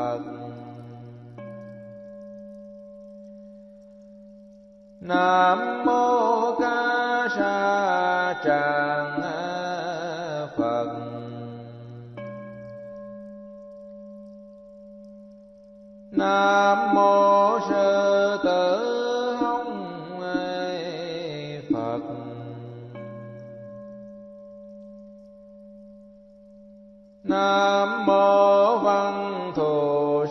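Vietnamese Buddhist chanting set to music: a melodic chanted phrase of several seconds comes three times, about 11 seconds apart. After each phrase a long steady tone is held and slowly fades.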